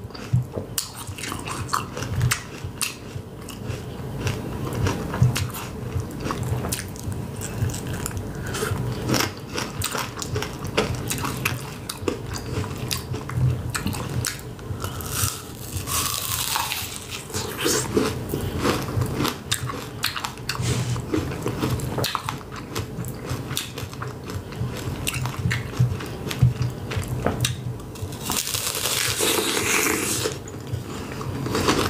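Close-miked biting and chewing of a candy apple, the hard candy shell cracking and crunching between the teeth. Louder bites come about halfway through and near the end.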